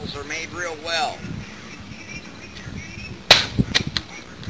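Plastic soda bottle swung hard against the boat's bow: one sharp crack about three seconds in, then two lighter knocks, as the bottle bursts open. A man's voice is heard early on.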